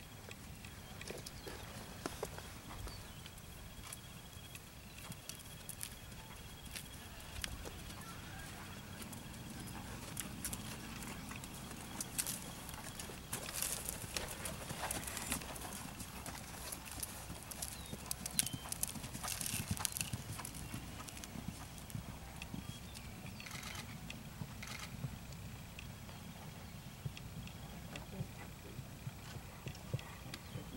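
A horse's hoofbeats on sand arena footing as it trots, with many short clicks and rustles that are busiest around the middle.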